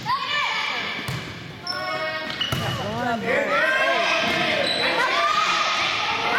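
Volleyball rally in a gymnasium: the ball is struck with a few sharp smacks, and players and spectators call out and shout, with the voices swelling in the second half. There are short high squeaks, and everything echoes in the hall.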